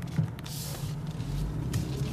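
BMW car engine running steadily at low revs, heard from inside the cabin, with a short hiss about half a second in.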